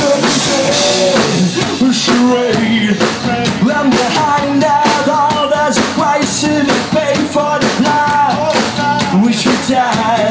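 Live rock band playing loud and steady: electric guitars, bass and drum kit, with a male singer's voice over them.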